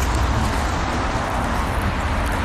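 Steady outdoor street noise: an even hiss with a low rumble underneath and no distinct events.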